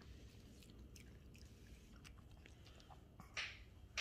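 A Shih Tzu chewing pieces of chicken liver: faint, scattered small chewing clicks, with one brief louder noise near the end.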